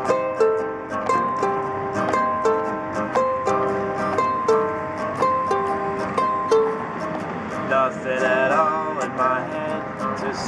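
Ukulele and acoustic guitar playing together, strummed in a steady rhythm, an instrumental passage between sung verses.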